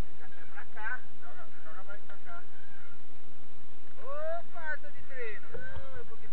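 Indistinct voices talking over a steady rush of noise, with speech about a second in and again from about four seconds on.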